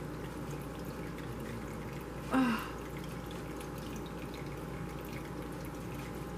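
Faint steady room noise, broken once about two and a half seconds in by a brief vocal sound from the woman, falling in pitch.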